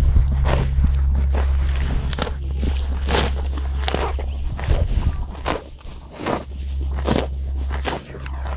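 A cow grazing close up, tearing off mouthfuls of grass in a steady rhythm of about one rip every three-quarters of a second, over a steady low rumble.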